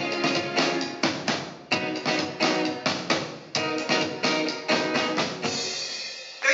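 Live band playing a wordless passage on drum kit and guitar, with repeated sharp drum hits over strummed chords.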